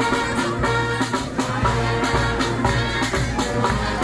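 Brass band playing: sustained horn and sousaphone chords over a steady bass drum and percussion beat.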